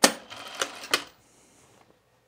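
Juki industrial sewing machine stitching a short run along a tuck: a quick mechanical clatter starting suddenly, lasting about a second, with a couple of sharper clicks before it stops.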